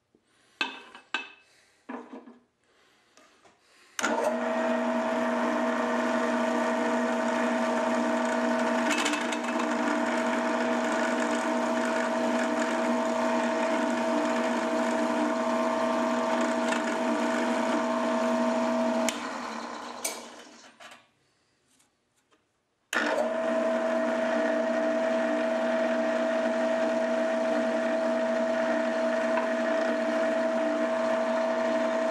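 Milling machine spindle running a number two center drill at about 1500 RPM while it centre-drills punched marks in a metal block, a steady machine whine with a lower hum. A few light clicks come first; the spindle starts suddenly about four seconds in, runs about fifteen seconds, spins down, and is restarted about two seconds later.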